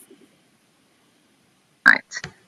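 Near silence on a video-call audio feed, then near the end one short, loud, clipped burst of a woman's voice as her sound cuts back in.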